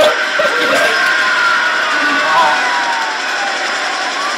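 Indistinct voices of a few people talking, with music faintly behind.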